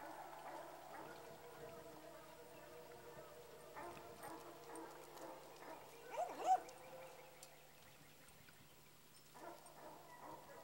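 An animal calling twice in quick succession, about six seconds in, over faint background sound and a low steady hum.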